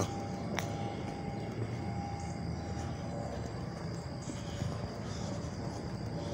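A distant engine drone, steady and low, fills the background, with faint steady hum tones in the first half. A single click sounds about half a second in.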